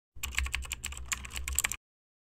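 Computer keyboard typing sound effect: a quick run of about ten key clicks over a second and a half that cuts off suddenly.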